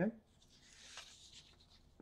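Sheets of paper sliding and rustling against each other: a faint, soft hiss that swells about a second in and fades near the end.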